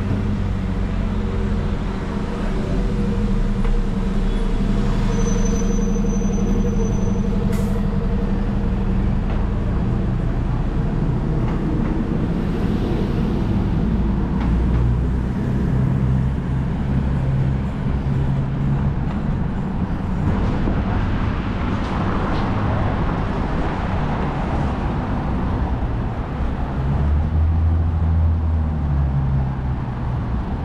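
City street traffic: vehicle engines running, with a steady low engine hum for the first several seconds and a louder rush of passing traffic about two-thirds of the way through. A single sharp click comes about seven seconds in.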